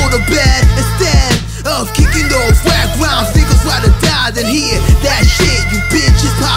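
Hip hop track playing: a beat of deep bass and regular drum hits with a rapper's vocal over it.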